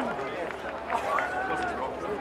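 Several raised voices shouting and calling out across a rugby league field, overlapping, with no clear words.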